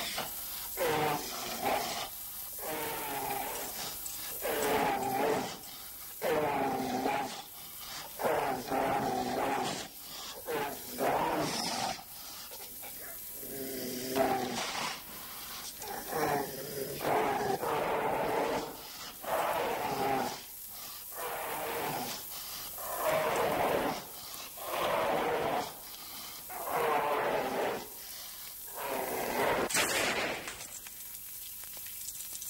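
A bear roaring over and over, one growling roar about every second or two.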